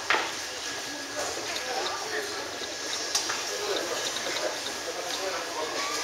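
Chatter of a large crowd in a gymnasium, many voices overlapping, with a single sharp knock just at the start.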